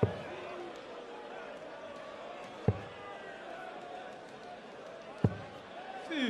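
Steel-tip darts striking a Unicorn Eclipse bristle dartboard: two sharp thuds about two and a half seconds apart, over a low steady murmur of the arena crowd.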